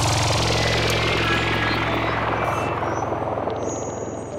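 Electronic dance music in a breakdown: the drums have dropped out, leaving a noisy rushing wash over a held low bass note that fades out gradually.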